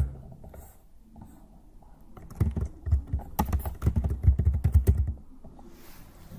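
Computer keyboard typing: a quick run of keystrokes that starts about two and a half seconds in and stops about five seconds in.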